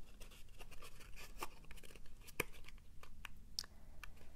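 Black cardstock being folded and pressed together by hand: soft paper rustles and crinkles with scattered small clicks, the sharpest a little past halfway through.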